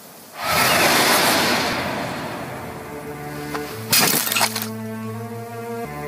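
Dramatic anime sound effect: a sudden loud crash-like burst about half a second in that fades over about two seconds, then a sharp hit about four seconds in, as tense music with long held low notes comes in.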